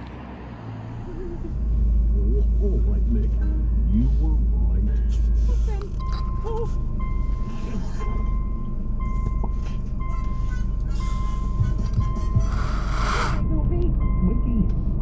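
A car's warning chime dinging about once a second over a low, steady rumble, with a short burst of rustling near the end.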